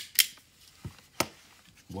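Max HD-10FL flat-clinch mini stapler squeezed shut while empty, with no staple loaded: sharp clicks of its mechanism, two loud ones about a second apart and a faint one between.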